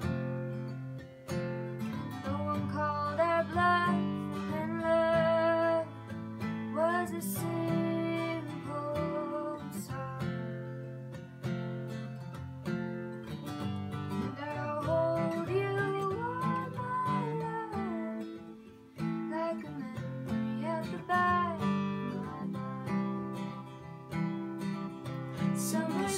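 Steel-string acoustic guitar strummed in a steady rhythm, with a harmonica in a neck holder playing a wavering, bending melody over it: an instrumental break without singing.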